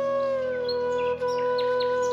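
Slow flute melody easing down onto one long held note, with several short bird chirps over it in the second half.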